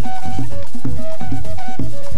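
Live Colombian Caribbean folk music: a large hand drum struck with the palms in a quick, steady rhythm, with a melody of short pitched notes over it.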